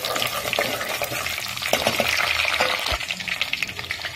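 Garlic, green chillies and curry leaves frying in hot oil in an aluminium pot, sizzling and crackling steadily while a spoon stirs them. A few light knocks of the spoon against the pot come through, the clearest about three seconds in.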